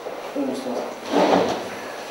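A chair moving as a man sits down at a table, a short dull shuffling sound about a second in.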